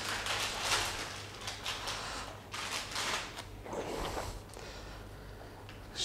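Irregular soft rustling of a sterile fenestrated fabric drape being shaken open and unfolded, with crinkling from its plastic packaging; it dies away near the end.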